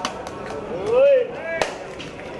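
Coconuts being smashed on stone paving as a temple offering: sharp, separate cracks, the strongest about one and a half seconds in. A voice calls out in a rising-then-falling shout about a second in.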